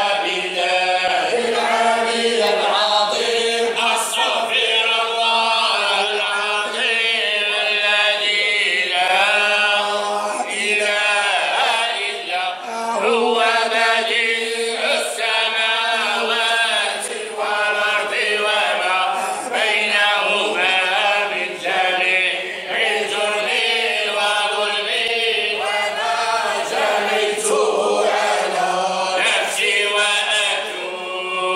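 A group of men chanting religious verses together without instruments, a continuous unaccompanied vocal chant with the phrases rising and falling in pitch.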